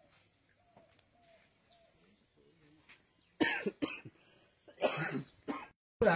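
A person coughing and clearing the throat in two short bouts in the second half, about a second and a half apart.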